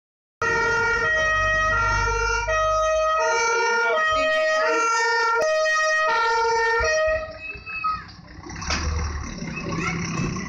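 Fiamm compressed-air two-tone horn (German Martinshorn) on a MAN fire engine, alternating between two pitches about every 0.7 seconds. It stops about seven seconds in, leaving the lower sound of the truck's engine as it drives past.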